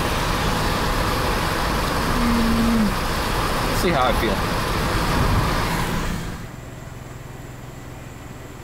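Car road noise heard inside the cabin while driving: a steady rushing of tyres and wind. About six seconds in it cuts off sharply to a much quieter steady low hum.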